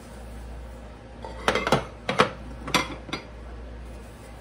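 Baking dishes clattering as they are handled and set down on the counter: a quick run of about six sharp clinks and knocks over two seconds, starting about a second in.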